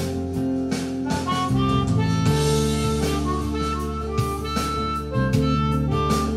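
Harmonica played cupped against a microphone, coming in about a second in with a line of held notes over a backing track with a steady beat and bass.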